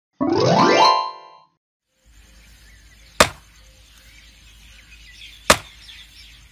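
A short rising electronic tone that glides up and then holds for about a second, followed by a pause. Then, over faint background, two sharp strikes about two seconds apart: a hoe blade chopping into dry earth.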